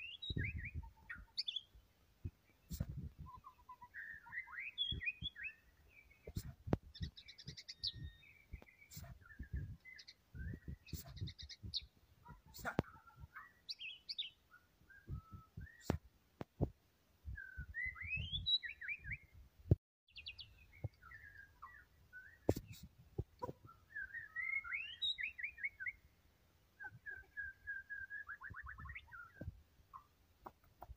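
White-rumped shama singing in varied phrases of whistles, slurred notes and quick trills, with short pauses between them; near the end a note is repeated rapidly before dropping into a trill. Frequent low knocks and sharp clicks sound between the phrases.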